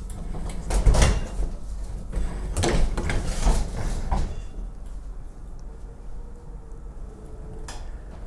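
A portable dishwasher being pushed across a kitchen floor on its casters: a few knocks and bumps as it is handled, then a quieter low rolling rumble.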